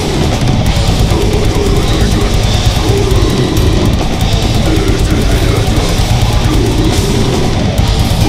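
Deathcore band playing live at full volume: distorted guitars and bass under fast, dense drumming on kick drums and cymbals, heard from right at the drum kit.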